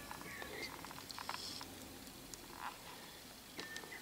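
Quiet outdoor background with a few faint, short, high chirps, one just after the start and a couple near the end.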